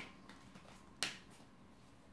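Quiet room tone broken by a single sharp click about a second in.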